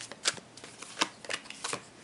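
A tarot deck being shuffled by hand: a string of short, crisp card snaps, irregularly spaced.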